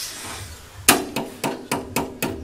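Hammer blows on a steel concrete-casting mould, about four a second, starting about a second in. Each strike rings briefly, and the first is the loudest.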